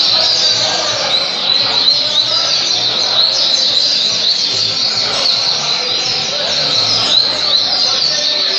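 Double-collared seedeater (coleiro) singing a continuous, fast stream of high chirps and trills, with other caged songbirds singing over it.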